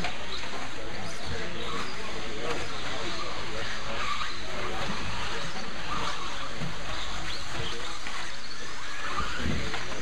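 1/10-scale electric 2WD RC buggies racing on a dirt track: a steady mix of motor whine and tyre noise, with voices in the background.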